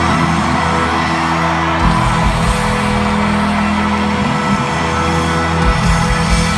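Live country band music through a stadium sound system, loud and steady with held chords, deep low notes coming in about two seconds in. Fans in the crowd yelling and whooping over it.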